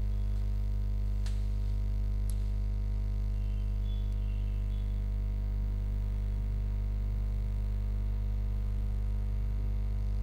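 Steady low electrical mains hum on the recording line, with two faint clicks about a second apart near the start.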